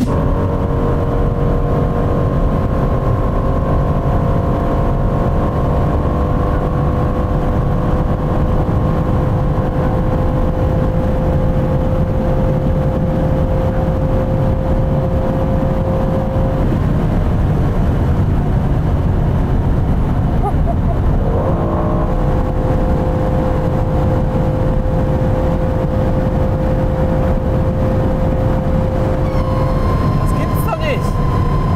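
Aston Martin Vantage F1 Edition's twin-turbo V8 heard from inside the cabin at close to top speed, around 290 km/h: a loud, steady engine drone over heavy wind and road noise. The engine tones waver briefly about two-thirds of the way in, then settle again.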